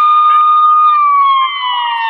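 Fire engine siren wailing: one tone held high, then falling away in pitch from about a second in.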